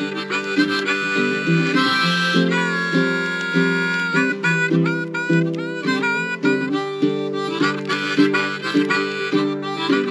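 Blues harmonica playing a melody of long held and bending notes over strummed baritone ukulele chords with a steady rhythm.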